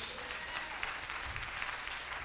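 Congregation applauding in response to a call to praise, steady scattered clapping at a modest level.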